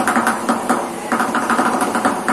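Improvised percussion: sticks beating plastic buckets and a plastic drum in a fast, even rhythm of about six strikes a second.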